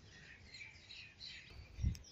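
Faint birds chirping, short scattered calls, with a brief low thud near the end.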